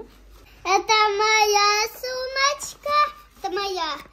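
A young child singing in a high voice, holding drawn-out notes in several short phrases without clear words.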